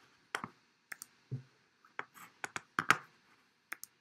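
Irregular sharp clicks and light taps, about ten in four seconds, with a cluster of quick clicks around the middle and near silence between them; no music is playing.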